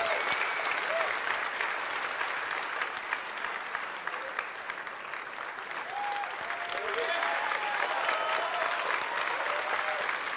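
Large audience applauding steadily after the reveal of a new chip, with a few voices heard among the clapping. The applause dips a little midway and swells again.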